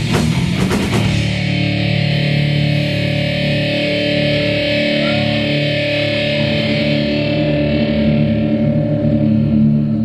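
Live thrash metal band: sharp drum and guitar hits in the first second, then a distorted electric guitar chord held and left ringing with steady feedback tones, the drums silent, as the song comes to its close.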